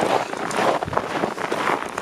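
Footsteps crunching on snow, an uneven series of steps as people walk.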